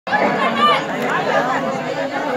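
Several people's voices talking over one another at close range.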